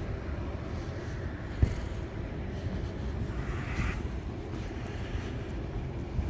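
Wind buffeting the microphone outdoors, a steady low rumble, with a single brief thump about a second and a half in.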